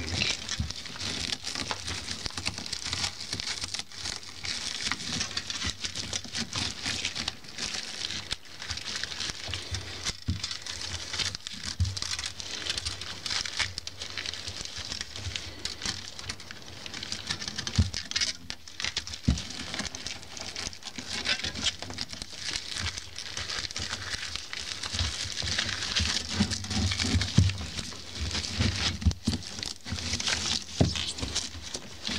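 Stiff polypropylene broom bristles rustling and crackling as copper wire is threaded and pulled through them by gloved hands, with a few soft knocks, more of them near the end.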